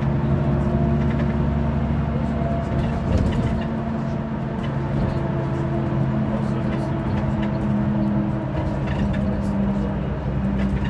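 City bus running under way, heard from inside the passenger cabin: a steady engine drone over road noise. The engine note changes about three seconds in.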